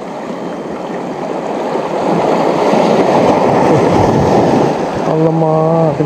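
Sea water washing and swirling around shoreline rocks close by, a steady rush that swells louder after about two seconds. Near the end a man briefly hums a held note.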